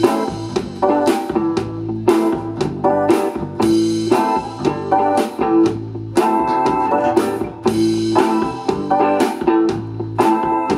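Live rock band playing an instrumental passage: electric guitar and bass guitar over a drum kit, with keyboard, in a rock-and-roll style.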